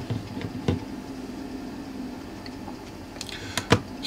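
Mellif 20-volt battery-powered car refrigerator running with a mild, steady hum. A few sharp clicks and knocks come over it near the start, about two-thirds of a second in, and again near the end, as a small digital timer is handled and set down on its plastic lid.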